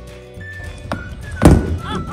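Background music with a single loud thunk about a second and a half in, and a lighter click shortly before it.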